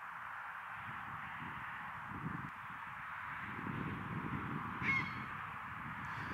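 Steady hiss of distant motorway traffic with uneven wind rumble on the microphone, and one brief bird call about five seconds in.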